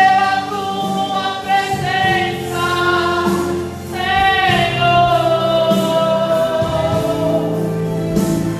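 A gospel hymn sung in church with instrumental accompaniment. Long held sung notes ride over a steady bass line.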